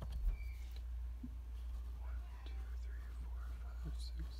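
Faint rustling and light scraping of a metal ruler and marker being handled on graph paper, over a steady low hum.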